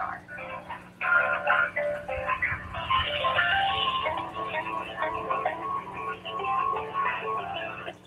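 Telephone hold music playing through a smartphone's speaker, thin and cut off in the highs by the phone line, starting about a second in just after the last word of a recorded announcement.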